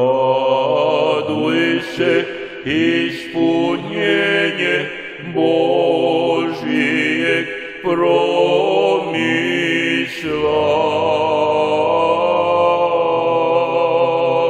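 Serbian Orthodox church chant sung by a male voice, in short phrases with brief breaks between them.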